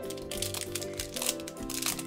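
A foil blind bag crinkling as it is handled and torn open by hand, with rapid crackles throughout, over steady background music.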